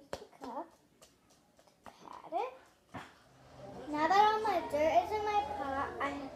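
A young girl's voice: short vocal sounds, then from about four seconds in a louder stretch of talking or singing-like vocalising that the transcript did not catch. There is a sharp click at the very start.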